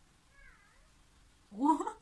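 A woman's short, loud burst of laughter, rising in pitch, near the end.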